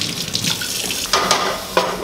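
Kitchen tap running into a sink, water splashing steadily.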